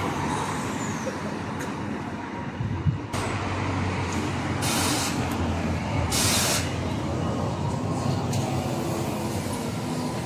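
Battery-electric Volvo BZL double-decker bus with MCV body at the stop and pulling away: a steady low hum, a sharp knock about three seconds in, then two short hisses of air a little after the middle, typical of air brakes releasing.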